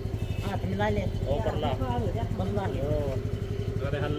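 Motor scooter engine idling with a steady, even pulse, under voices talking.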